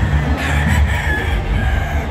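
A gamecock crows once, a call about a second and a half long starting about half a second in, over background music.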